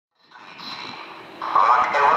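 Railway station public-address loudspeaker beginning a Czech-language train announcement about a second and a half in, echoing over the platform. Before it there is a steady background hiss with a thin high tone.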